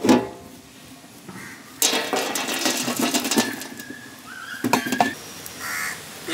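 Aluminium biryani pot lid knocked into place with a sharp metallic clank. About two seconds in come a second and a half of rattling and scraping as charcoal embers are tipped onto the lid, followed by two sharp clinks near the end.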